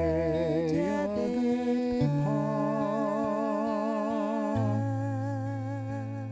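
A woman humming a slow melody with vibrato over held acoustic guitar chords.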